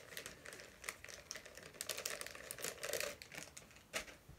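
Plastic bags crinkling and rustling in quick, irregular clicks as hands rummage through them for the next packet of soft-plastic lures.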